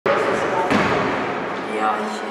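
Echoing sports-hall noise of volleyball practice, with a ball hitting hard once a little under a second in, over scattered voices of players.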